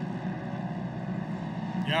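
Engines of Pro Modified side-by-side UTVs racing on a dirt track, heard as a steady mixed drone. A commentator's voice comes in just at the end.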